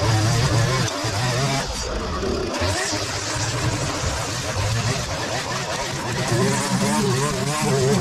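Petrol string trimmer running, its engine speed wavering up and down as the line cuts grass, easing off briefly about two seconds in.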